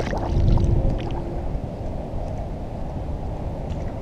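A brief splash at the start as a small speckled trout is let go over the side of a kayak, followed by water sloshing against the plastic hull with low wind rumble on the microphone.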